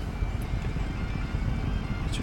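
Ford 6.0L Power Stroke V8 turbodiesel idling, a steady low rumble heard from inside the cab.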